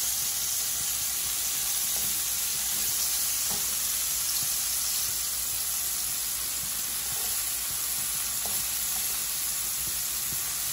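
Lobster meat frying in oil in a nonstick pan: a steady sizzle with a few faint pops.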